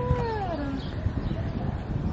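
A sea lion's call: one drawn-out, meow-like note about a second long that holds its pitch and then falls away, over a steady low background noise.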